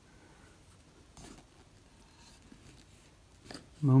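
Kitchen knife cutting into the rough, brown skin of a mamey sapote: a faint crunching scrape about a second in, then a few quieter scrapes.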